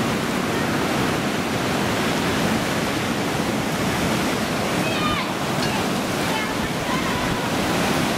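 Heavy surf breaking on the beach, a steady unbroken wash of waves from a storm-roughened sea, with faint distant voices now and then.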